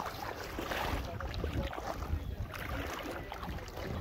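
Outdoor ambience on calm water: wind rumbling on the microphone, with light water sounds and faint scattered ticks.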